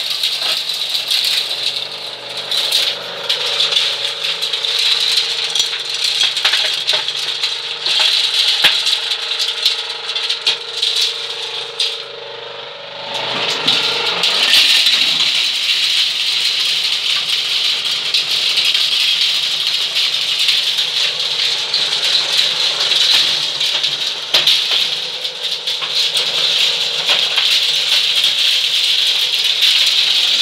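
Homemade corn sheller running, corn kernels rattling against its metal drum as cobs are fed in and shelled, over a steady hum. The rattle drops off briefly about twelve seconds in, then comes back louder and stays dense.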